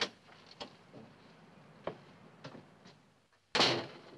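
A few light knocks or steps, then a door shut with a bang about three and a half seconds in.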